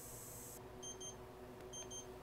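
Accucell hobby LiPo charger beeping its end-of-charge alert: short high double beeps, twice about a second apart, signalling the battery has finished charging.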